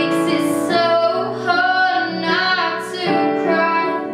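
A girl singing a pop song cover solo, her melody bending and sliding between held notes, over a sustained instrumental backing of held chords.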